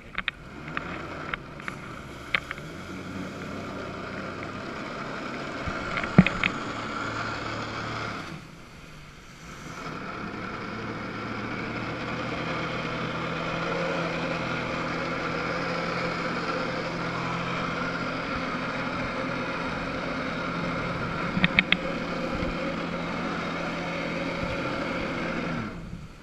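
Jet ski engine running hard to pump water up a hose to a flyboard. The revs build, drop away for about two seconds partway through, then hold high and fall off at the end. A sharp knock stands out about six seconds in.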